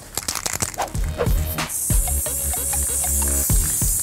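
An aerosol can of blue spray paint rattles in quick irregular clicks, then sprays with a steady high hiss from about two seconds in, over background music.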